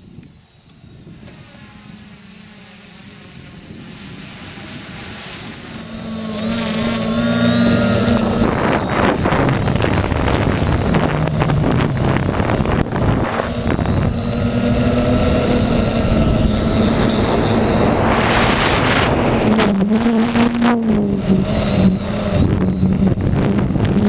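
Octocopter's eight electric motors and propellers whirring, their pitch wavering up and down as the motor speeds change, with wind rushing over the microphone. Faint at first, the sound grows loud over the first eight seconds and then stays loud.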